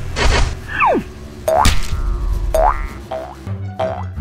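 Cartoon-style sound effects over background music: a short whoosh at the start, a long falling whistle-like glide about a second in, then two short rising boings.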